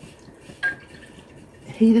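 Silicone whisk stirring cocoa and water in a small metal saucepan, with one light clink against the pan about half a second in.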